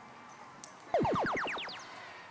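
FRC Power Up field sound effect: an electronic cascade of quick falling pitch sweeps that starts sharply about a second in and fades away within a second. It is the cue for the Blue alliance playing the Force power-up.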